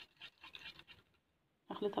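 Wire whisk stirring a frothy liquid soap mixture in a glass bowl: faint, irregular scraping and tapping of the wires against the glass for about a second, then it cuts off.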